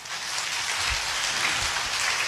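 Audience applauding, starting suddenly and keeping up steadily.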